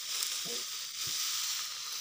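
Dry straw rustling steadily as a pile of harvested crop stalks is gathered up and lifted by hand.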